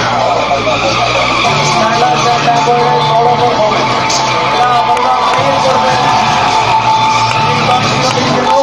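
Sport motorcycle engine held at high revs, with its rear tyre skidding on concrete as the bike circles in a tight drift. The sound holds steady with no breaks.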